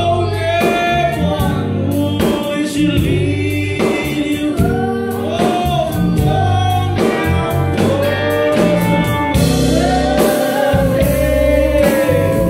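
Live band playing a rock song: sung vocals over drum kit, bass guitar and guitars, with regular drum hits keeping the beat.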